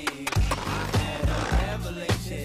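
Skateboard sounds, wheels rolling and a sharp clack of the board right at the start, over music with a heavy, regular bass beat.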